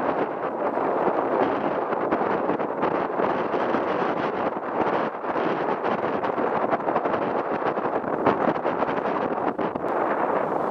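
Steady wind buffeting the microphone, mixed with the wash of choppy sea water around a small boat.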